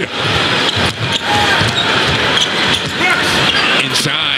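Basketball game sound in a packed arena: a steady crowd din with a ball bouncing on the hardwood court and scattered short knocks from play.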